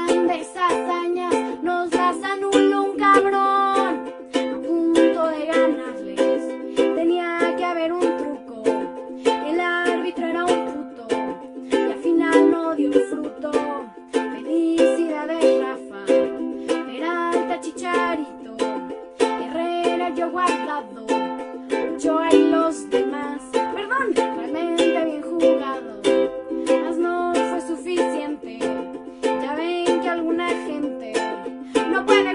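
Ukulele strummed in a steady rhythm.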